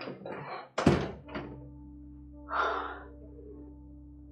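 A door being shut: two dull thuds about a second apart, the second the louder, with a softer rustle-like burst near the middle. A soft music bed of steady held notes comes in under it.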